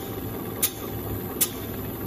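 Single-sided lapping machine running, a steady low mechanical hum with a short sharp tick about every three-quarters of a second, twice here.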